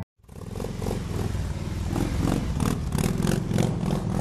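A motorcycle engine running, fading in after a split second of silence and holding steady.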